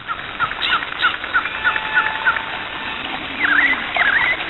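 Birds chirping: a run of short, evenly spaced chirps about three a second, then two louder up-and-down sweeping calls near the end.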